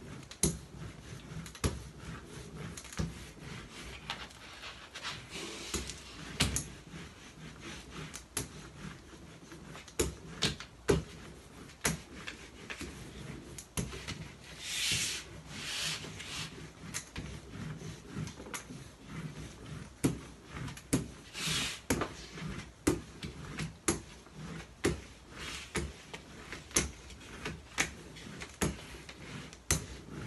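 A hand brayer rolled back and forth over a sheet of paper on a tabletop board: rubbing strokes with many irregular light knocks and clicks, and two longer, louder rubbing swishes, one about halfway through and another a few seconds later.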